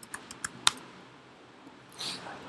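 Typing on a computer keyboard: a quick run of about half a dozen key clicks within the first second, the last one loudest.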